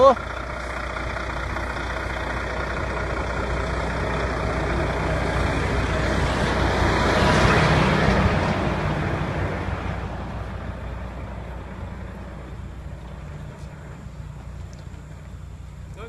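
A vehicle passing on the highway: tyre and engine noise swells to a peak about halfway through and then fades away, over a steady low engine hum.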